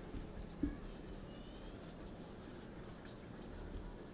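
Marker pen writing on a whiteboard: faint scratching strokes with a brief squeak, and a soft bump about half a second in.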